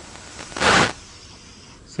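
One short, scratchy stroke of writing on a board, lasting under half a second, about half a second in.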